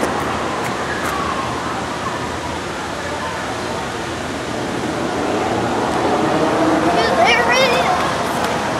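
Steady rushing noise of running water, with faint voices of people in the background and a brief high-pitched voice near the end.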